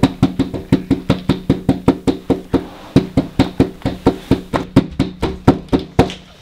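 A fast, even run of loud knocks, about five or six a second, over a low steady hum; it stops suddenly at the end.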